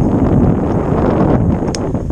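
Wind buffeting the microphone: a loud, steady, low rushing rumble.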